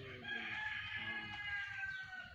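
A rooster crowing: one long held call of about two seconds, sagging slightly in pitch towards the end.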